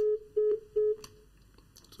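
Telephone line tone over the studio phone-in line: three short, evenly spaced beeps at one steady pitch within about a second, the disconnect tone after the caller hangs up.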